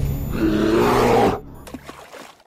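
A deep animal roar sound effect laid over the end of electronic intro music. Both cut off sharply about a second and a half in, leaving a faint fading tail.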